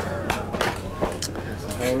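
Men's voices talking casually over one another; no distinct non-speech sound stands out.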